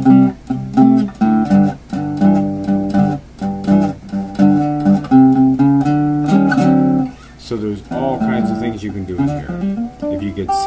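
Fingerpicked archtop acoustic guitar playing blues lines in the key of G in standard tuning. A busy run of plucked bass and treble notes thins to lighter single-note phrases about seven seconds in.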